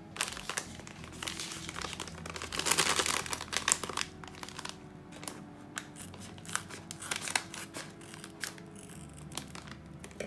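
Foil coffee bean bag crinkling as it is handled, loudest about three seconds in, then scissors snipping through the top of the bag in short, scattered cuts.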